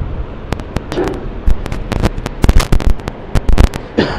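A run of sharp, irregular pops and crackles, some very loud, coming thickest about two and a half seconds in.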